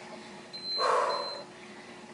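A short breathy exhale lasting about a second, with a faint high-pitched beep sounding twice over it.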